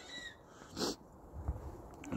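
A quiet stretch broken by one short breath close to the microphone a little under a second in.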